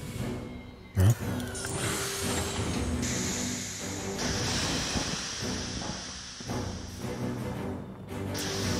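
Film soundtrack: ominous score with a deep boom about a second in, then a rising rush of starship engine noise that settles into a steady hiss as the ship passes overhead.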